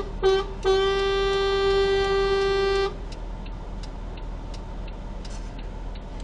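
Horn of a vehicle behind the stopped car: a short toot, then one long blast of about two seconds that stops abruptly. It is an impatient driver honking to make the stationary car move off.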